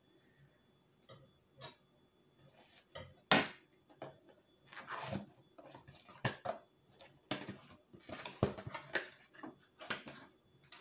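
Cardboard box being opened by hand, close to the microphone: irregular knocks and scrapes of the box, then the lid folded back and the paper wrapping inside rustling, in a series of short crinkles.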